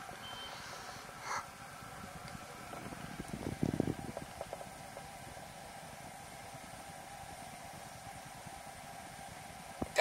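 A short beep from the fireplace remote as the flame is stepped up to high, then an LP gas fireplace running with a steady hum. A few low knocks come about three and a half seconds in.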